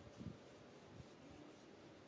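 Near silence: a faint background hiss with two soft, low thumps, one just after the start and a weaker one about a second in.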